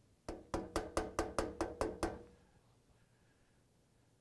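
Knocking on a door: a quick run of about nine sharp knocks in under two seconds, each with a short ring, then quiet.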